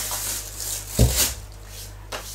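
Salt being poured into a mixing bowl with a soft hiss, then a single dull thump about a second in.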